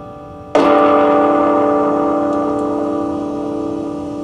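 An electric guitar chord struck once about half a second in, ringing out through an amp with effects and slowly fading.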